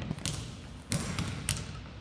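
Basketball bouncing on a hardwood gym floor: three sharp bounces a little over half a second apart.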